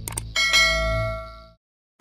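Two quick mouse-click sound effects, then a bright bell ding that rings and fades before cutting off: the sound effect for a cursor clicking a subscribe-notification bell.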